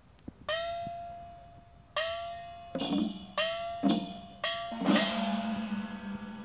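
Two metal gongs struck in turn, a higher one and a lower one, each stroke left ringing. The strokes are slow at first and then quicken; the higher gong's note bends slightly upward after each hit, and the last low stroke rings on.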